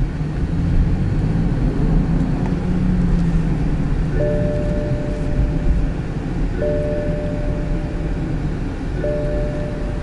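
BMW X5 driving slowly, a steady low engine and road rumble. About four seconds in, a steady electronic tone starts and restarts every two and a half seconds or so, three times.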